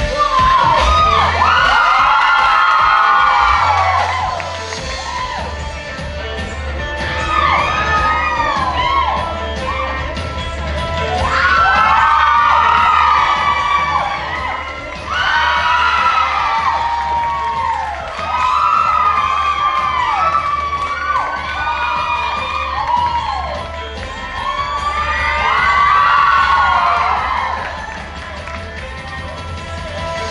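Audience cheering, whooping and shouting in surges every few seconds, over backing music with a steady bass.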